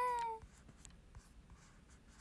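A woman's singing voice holding a note into a microphone, which bends slightly and fades out about half a second in, followed by quiet room tone with a few faint clicks.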